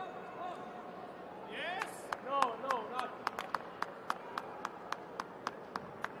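Sharp hand claps in a steady rhythm, about four a second, starting about two seconds in and running on, with a shout of voice with rising and falling pitch over the first claps.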